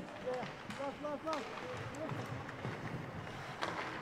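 Faint ice-rink ambience during play: scattered distant voices echoing in the arena over a low hum, with a few light clicks.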